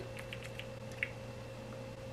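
Pump top of a plastic serum bottle pressed toward the face: a few faint clicks, then one sharper click about a second in, over a steady low hum.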